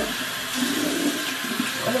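Bathroom sink faucet running steadily into the basin.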